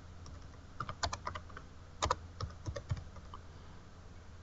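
Typing on a computer keyboard: quiet key clicks in short uneven runs with brief pauses between them.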